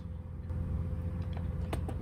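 A steady low electrical hum with a faint high whine, and two quick clicks close together near the end as a setting is clicked up in charge-controller software on a laptop.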